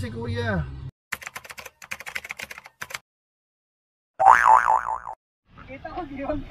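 Edited-in cartoon sound effects. First comes a fast run of sharp clicks for about two seconds, then, after a dead-silent gap, a loud wobbling boing. A voice trails off in the first second and another begins just before the end.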